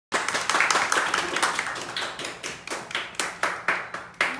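Small audience clapping, dense at first and thinning to a few scattered claps as it dies down.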